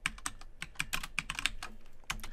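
Computer keyboard typing: a quick, uneven run of keystroke clicks, roughly eight to ten a second, as a few words are typed.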